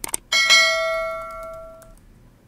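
Subscribe-button animation sound effect: a couple of quick clicks, then a bell chime about a third of a second in that rings with several steady tones and fades away over about a second and a half.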